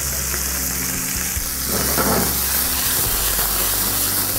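Chopped vegetables sizzling in hot oil in a nonstick frying pan, a steady hiss.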